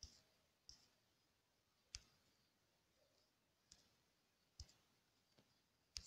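Near silence broken by faint, sharp clicks, about six of them spaced irregularly: fingertip taps on a phone's touchscreen.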